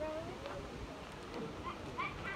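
Faint, scattered voices in the background, with short high-pitched fragments.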